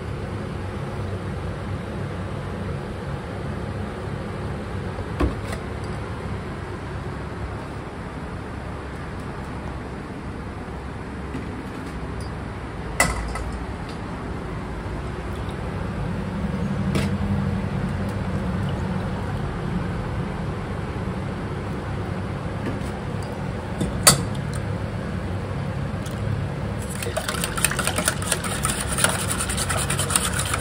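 Milk poured from a plastic gallon jug into a glass measuring cup and then into a steel bowl of eggs, with a few sharp clinks, under a steady low hum. Near the end a whisk starts scraping quickly around the steel bowl, beating eggs and milk together.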